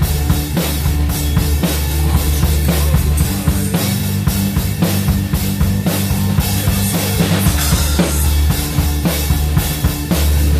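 Acoustic drum kit played in a steady beat, with kick and snare strokes and cymbals, along with a backing track whose sustained low bass notes run underneath.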